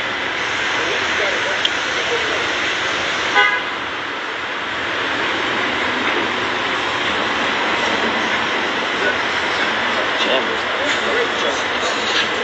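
Steady road-traffic noise, with a short car-horn toot about three and a half seconds in.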